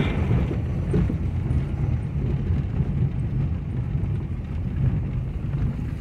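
Inside a pickup truck's cab driving slowly over a cobblestone street: a steady low rumble from the tyres on the stones, with the body rattling and knocking all the while, since the truck has something loose.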